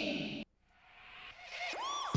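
An edit transition: the sound cuts out abruptly to silence, then a rising whoosh swells up, with a pitch sweep climbing at the end, leading into a music track.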